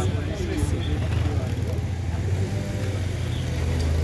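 Diesel engine of a wheel loader running with a steady low drone, growing a little louder near the end. Voices talk indistinctly in the background.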